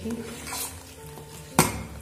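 Metal spoon stirring a thin besan kadhi mixture in a steel pot, with one sharp clink about one and a half seconds in. Faint background music.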